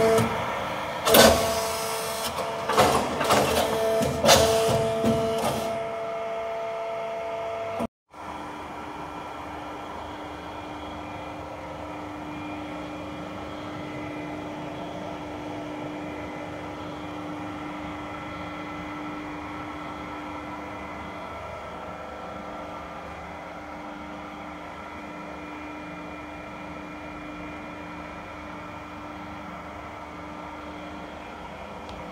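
BOY 22D injection moulding machine's electric motor and hydraulic pump running with a steady hum and a low steady tone. Over the first several seconds there are clicks and knocks. The sound cuts out briefly about eight seconds in.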